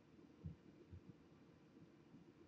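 Two soft, low knocks about half a second apart over near silence: glass test tubes being set into the plastic cups of a serofuge rotor.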